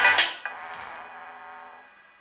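Music played through a homemade 2SA1943/BD139 transistor amplifier into a woofer, loud at first, then dropping sharply about half a second in and fading away to a faint tail.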